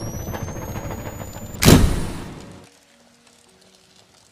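Edited sound effect: rising whines over a rumble build to a loud burst of noise about a second and a half in, which fades away within a second, leaving a few faint held tones.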